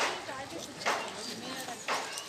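People talking in a street, with three sharp taps about a second apart.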